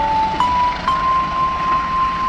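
A slow electronic melody of single notes, stepping up twice before one note is held, over steady background noise.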